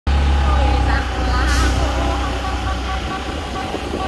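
Low rumble of a moving vehicle on a city street, strongest for the first three seconds and then easing, with faint voices and a brief hiss about one and a half seconds in.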